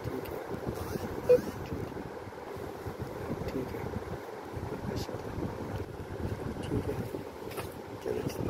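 Steady low background noise of a busy market stall, with faint indistinct voices. A single short sharp sound comes about a second in.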